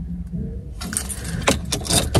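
A bunch of car keys jangling, a quick run of bright metallic jingles starting a little before the middle, over a low steady rumble in the car.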